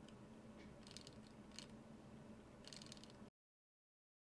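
A few faint, scattered plastic clicks from a 3D-printed escape wheel's teeth ticking past its pallet fork as the wheel is turned by hand. The sound cuts out completely a little over three seconds in.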